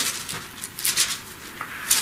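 Quiet room with faint rustling and a soft click about one and a half seconds in.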